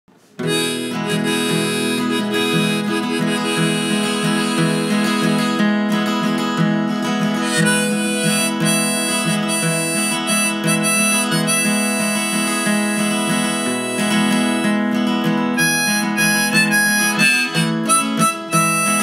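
Harmonica and strummed acoustic guitar playing a folk-song instrumental intro, starting about half a second in.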